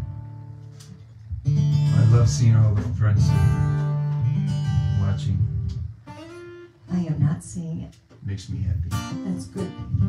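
Acoustic guitar strummed, chords ringing out: the sound fades in the first second, comes back strong about a second and a half in, breaks off briefly around six seconds, then returns in shorter strums.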